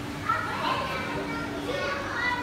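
Excited children's voices and chatter of a crowd, high-pitched calls rising over each other, loudest just after the start, with a steady low hum underneath.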